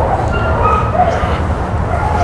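A dog whining softly in a few short, faint high notes during its sit-and-wait, over a steady low background rumble.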